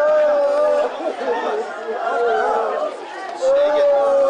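Mourners' voices crying and wailing over one another in a crowd, in long drawn-out cries. One cry breaks off about a second in, and a new, louder one starts shortly before the end.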